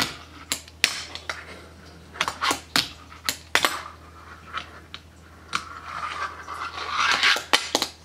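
Fingerboard tricks on a countertop: a scattered series of sharp clicks and clacks as the small wooden deck is popped, flipped and landed on the hard surface, with a softer rushing noise late on.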